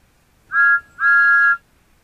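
A two-note whistle in the style of a steam engine's, sounding twice: a short toot, then a longer one of about half a second.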